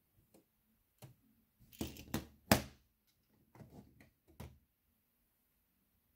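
Hard plastic LEGO Technic parts clicking and knocking as a lidded sorter compartment is handled and opened by hand. There are scattered sharp clicks, a cluster about two seconds in with the loudest knock just after it, then a few fainter clicks.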